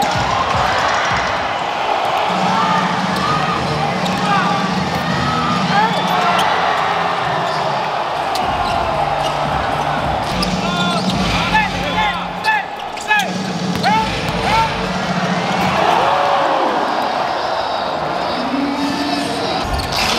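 Basketball game action on an indoor hardwood court: the ball being dribbled and sneakers squeaking on the floor, with a run of quick squeaks about halfway through, over the steady murmur of the crowd's voices.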